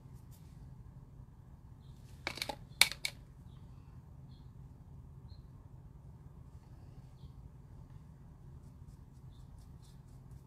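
Quiet room tone with a steady low hum. About two and a half seconds in, one short spoken word comes with a single sharp click, the loudest moment. Faint small ticks follow now and then.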